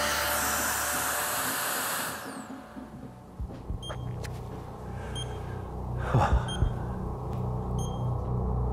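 A long steady exhalation blown through the mouthpiece of a Bedfont Micro+ Smokerlyzer carbon monoxide breath monitor: a breathy rush for about two seconds. It then fades to a low hum with a few faint short beeps.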